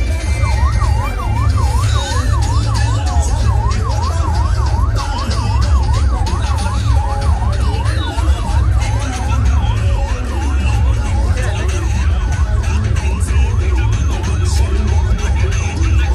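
A vehicle siren in fast yelp mode, its pitch sweeping up and down about three times a second and fading out after about twelve seconds. Loud music with heavy bass plays underneath.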